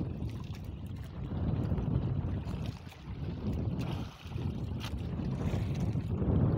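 Wind gusting on the microphone, rising and falling, with choppy sea washing against a small outrigger boat whose engine is off.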